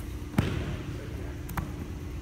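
A single thud of bodies landing on a foam wrestling mat as a wrestler is rolled over onto his back in a cradle, with a lighter tap about a second later.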